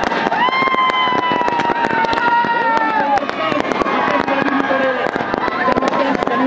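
Dense, rapid crackle of firecrackers going off over a crowd shouting and cheering in celebration. One long, high, held cry or horn note stands out for about three seconds near the start.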